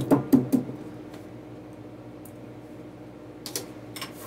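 A plastic drafting triangle knocking and clacking on a drawing board as it is handled and set in place: a quick run of about four sharp knocks at the start, then single taps about a second in and near the end, over a low steady room hum.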